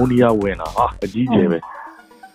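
Speech: a man talking, with faint background music.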